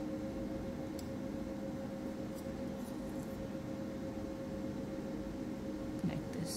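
A steady low hum of room tone with a few faint light ticks scattered through the first half.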